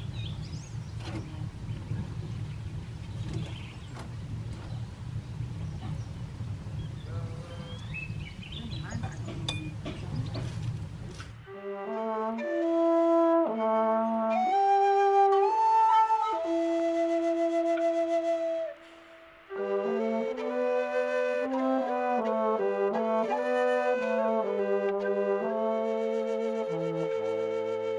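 For about the first eleven seconds, outdoor ambience with a low rumble like wind on the microphone and a few faint bird chirps. After that a slow flute melody with held notes takes over and carries on to the end.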